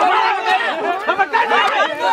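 Several people shouting and talking over one another in a loud, excited jumble of voices.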